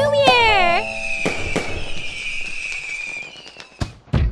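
Music with a falling pitched glide stops about a second in. A firework sound effect follows: two sharp bangs, a long whistle that slowly drops in pitch, and crackling that fades away.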